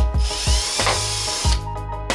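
Cordless drill boring a hole into a grey board, running for about a second and a half and then stopping. Background music with a steady beat plays throughout.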